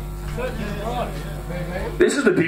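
Indistinct voices talking between songs over the steady low hum of stage guitar amplifiers.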